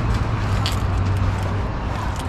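Steady outdoor background noise: a constant low hum under an even rushing hiss, with no distinct event standing out.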